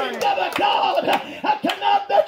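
A man preaching in an impassioned shout through a microphone and PA speaker, in short, rhythmic bursts about twice a second, with words hard to make out.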